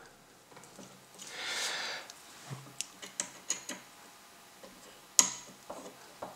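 Small metal clicks and ticks of a hex key working the grub screw on an RC speedboat's rudder linkage, with a soft rustle about a second and a half in and a sharper click about five seconds in.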